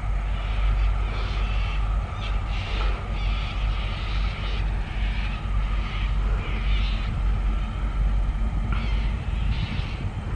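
Diesel locomotives of an approaching empty ore train, a steady low engine drone with irregular higher sounds over it.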